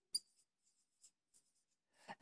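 Faint strokes of a felt-tip marker on a whiteboard as words are written, with a short click just after the start.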